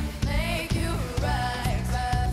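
Live pop music: a female lead vocalist singing a melodic line over a full band, with bass, keyboards and drums keeping a steady beat.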